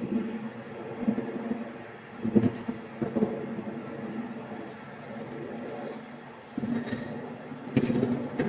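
Outdoor sound from an eyewitness phone video playing back: a steady rumble with a faint low hum, swelling briefly twice and growing louder near the end.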